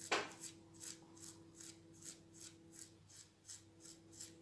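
A thumb dragged again and again across the paint-loaded bristles of a toothbrush, flicking a fine spatter of paint onto the board: quick, faint rasping strokes, about five a second.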